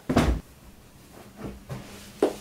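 A short, loud thump from a wooden bunk bed as a person climbs up onto its lower bed, followed about a second and a half later by a much softer bump.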